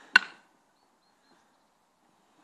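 A single sharp sword blow landing, a crack with a brief ring, about a sixth of a second in.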